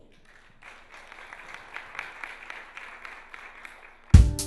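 Audience applauding, faint, beginning about half a second in and tapering off near the end.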